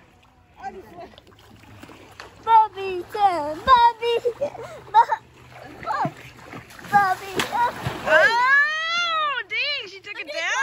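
Water splashing in shallow lake water about seven seconds in, among bursts of laughter and excited voices, with a long wavering shriek near the end.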